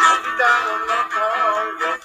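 Acoustic guitar played by hand, sustained plucked notes, with a wavering sung melody over it.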